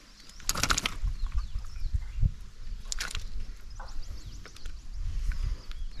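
A hooked largemouth bass splashing and thrashing at the surface as it is lifted from the water, with two loud splashes about half a second and three seconds in. Faint bird chirps throughout.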